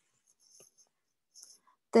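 Faint scratching and tapping of a stylus on a tablet's glass screen as a letter is written, in two short spells.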